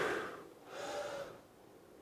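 A man breathing hard through a slow push-up, with two audible breaths: a short one at the start and a longer one about a second in, as he lowers himself toward the mat.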